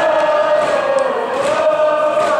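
A school cheering section in the stands chanting a cheer in unison, on long held notes.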